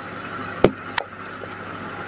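Microwave oven running with a steady hum. Two sharp clicks come about two-thirds of a second and one second in.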